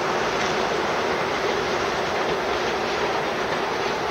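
Freight train of tank wagons rolling along the track, the wheels on the rails making a steady, even noise.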